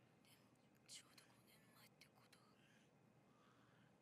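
Near silence: faint room tone with a few brief, soft clicks or breath noises, the clearest about a second in.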